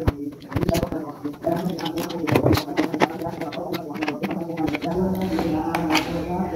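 Indistinct voices talking in the background, with scattered sharp clicks and rustles from plastic wiring-harness connectors being handled.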